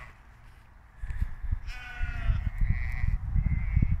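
Sheep bleating once, a little under two seconds in; the call trails into a thinner, higher tone for about a second. Under it, from about a second in, is a low, gusty rumble on the microphone.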